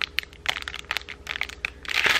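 Thin clear plastic packaging bag crinkling as it is handled, a run of irregular small crackles.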